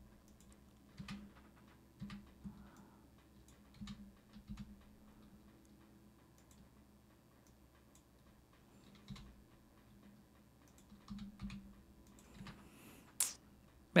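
Faint, scattered clicks of a computer keyboard and mouse: a dozen or so single keystrokes and clicks at uneven intervals, the sharpest one near the end.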